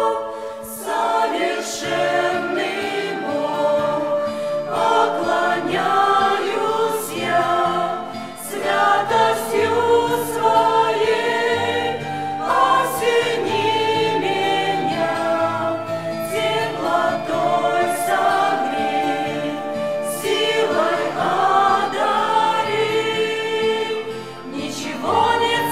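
Mixed choir of adults and children singing a Christian worship song in Russian, sustained chords moving through the phrases.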